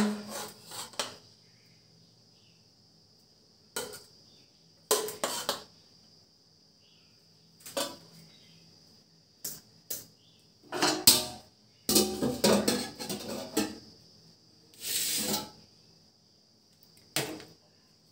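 Slotted metal serving ladle scraping and knocking against a metal cooking pot and a plate while rice biryani is dished out, in scattered clinks and scrapes with a busier run of them a little past the middle.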